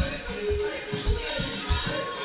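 Dance music with a steady bass beat, about two beats a second, and a melody over it.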